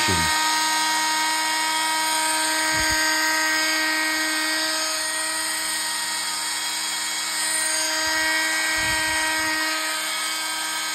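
Dremel MM50 Multi-Max oscillating multi-tool's corded 5-amp motor running free at a steady speed, blade not cutting anything: a steady, high motor whine.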